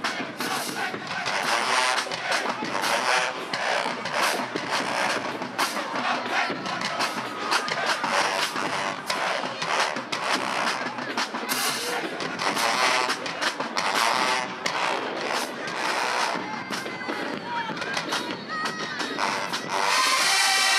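Marching band playing in the stands, drum hits and horns mixed with crowd noise and voices.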